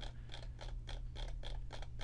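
Computer mouse scroll wheel ticking rapidly, about seven or eight clicks a second, as it steps through image slices, over a low steady hum.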